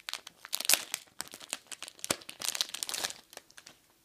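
Thin clear plastic sleeve crinkling and crackling as a card in a hard plastic holder is worked out of it by hand. The crackling is dense and uneven and stops about three and a half seconds in.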